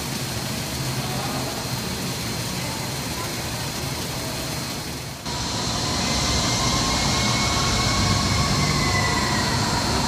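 Steady rushing background noise of an indoor glasshouse, like ventilation or air handling. About five seconds in it changes abruptly at an edit to a louder, brighter hiss carrying a faint, drawn-out high tone.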